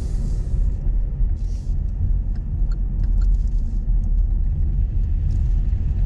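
Car interior driving noise: a steady low rumble of the engine and tyres as the car drives slowly, with a high hiss that fades out about a second in.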